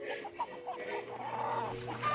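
Chickens clucking in a run of short calls, over a faint steady low hum.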